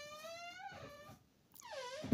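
Two faint, high-pitched whining calls from an animal: the first is held for about a second and rises slowly, the second comes near the end and is shorter, dipping then rising.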